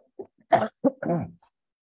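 A man clearing his throat: four short rough bursts within about a second and a half.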